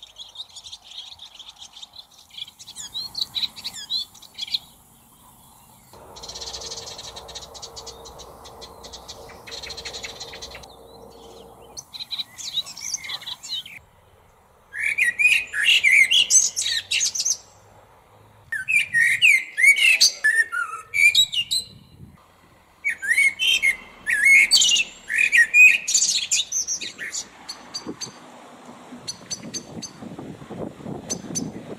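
Songbirds chirping in bursts of rapid high notes, loudest in the second half, each passage starting and stopping abruptly. A faint steady hum with hiss sits under the middle.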